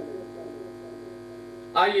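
Steady electrical mains hum, a buzzy drone with many even overtones, left bare in a pause between words. Speech breaks in again near the end.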